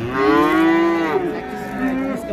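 A calf mooing once, a single call about a second long that rises slightly and then falls away.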